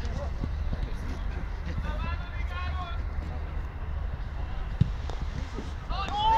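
Footballers on the pitch shouting to each other, calls that carry over a steady low rumble, with one sharp thud about five seconds in.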